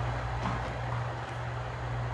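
Faint rustle of tarot cards being handled and laid on a stone countertop, over a steady low electrical hum.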